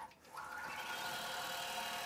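Longarm quilting machine running steadily as it stitches out a computerized pattern, a constant mechanical hum. The sound drops out for a moment just after the start, then resumes.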